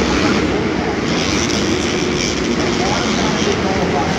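Several supercross dirt bikes running and revving around the track, their engines blending into a continuous loud drone heard across an indoor stadium, with a public-address voice underneath.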